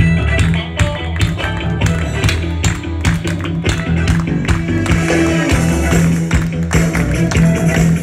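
Live Turkish pop song played on an electronic keyboard with guitar, with a steady bass line and a regular percussion beat.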